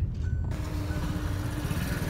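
A motorcycle idling close by amid street traffic noise, with a steady low hum running most of the way through.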